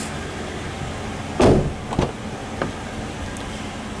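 Car door handling: a short thump about a second and a half in, then a sharp click half a second later, over a steady low hum.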